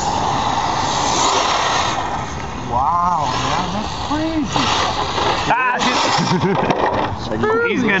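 A small RC scale truck driving over snow, heard as a steady rushing noise, with people whooping and laughing over it.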